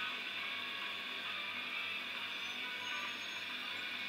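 A steady hiss with no distinct events, heard through a screen's speaker.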